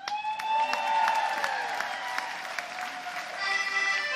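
Audience applauding and cheering loudly as a song ends, with one long high cheer held over the clapping. About three seconds in, an accordion starts playing sustained chords.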